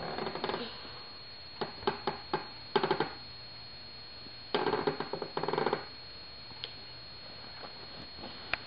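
A toddler making mouth sounds with his tongue and lips: a few sharp clicks, then a short burst, then a sputtering burst lasting a little over a second.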